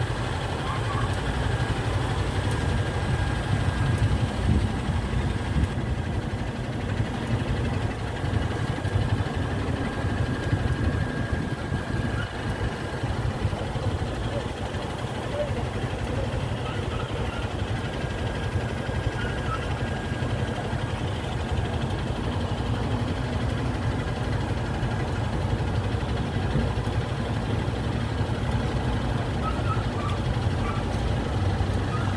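Motorcycle engines idling in a steady low rumble, with a crowd's voices underneath.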